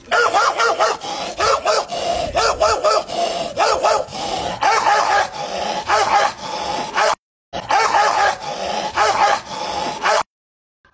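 A rapid run of dog-like yelping barks, several a second, voiced by a man through a cupped hand. There is a short break about seven seconds in.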